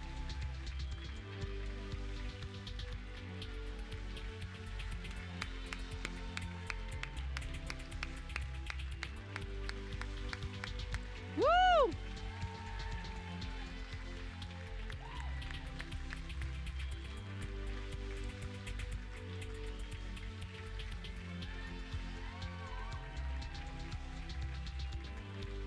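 Music with a steady beat. About halfway through, a brief loud whoop rises and falls in pitch.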